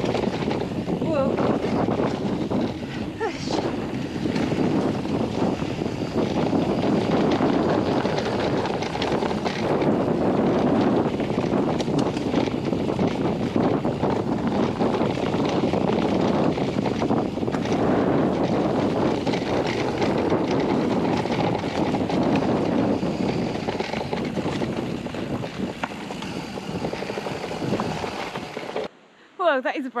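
Riding noise of a mountain bike going fast down a dirt trail, heard from a chest-mounted action camera: steady wind rush over the microphone, tyre roar on the dirt, and frequent knocks and rattles from the bike over the rough ground. The noise cuts off suddenly near the end.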